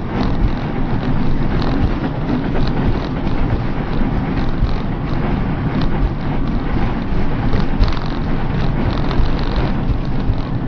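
Steady engine, drivetrain and road noise inside the cab of a motorhome driving at about 30 mph on a damaged gearbox that has lost fifth and sixth gear, with faint ticks and rattles scattered over the top.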